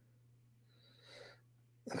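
Near silence: a pause in the talk, with one faint, short breath about a second in.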